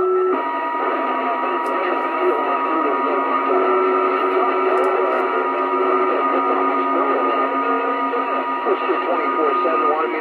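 A CB radio receiving a crowded long-distance skip channel: garbled voices of distant stations overlap in static, with steady heterodyne whistles running under them, all heard through the radio's small speaker.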